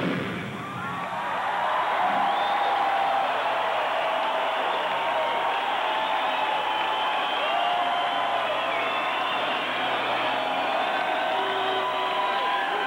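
Loud band music cuts off right at the start, then a large concert crowd cheers and screams steadily, many voices yelling at once.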